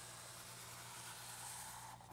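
Sharpie felt-tip markers drawn across paper in long strokes: a faint, steady scratchy hiss that stops at the end.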